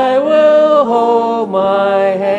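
A slow hymn being sung, the voices holding long, steady notes that step to a new pitch a few times.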